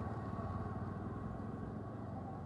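Street traffic: motorcycle engines running, heard as a steady low hum.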